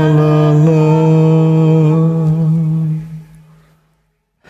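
A man's voice holding one long, low sung note at the end of a karaoke song, fading out about three seconds in.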